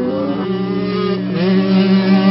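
Motocross bike engine accelerating, its pitch rising at the start and again about a second and a half in, then holding steady.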